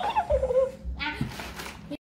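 A small puppy whimpering in high-pitched whines, twice: a longer falling whine, then a shorter one about a second in.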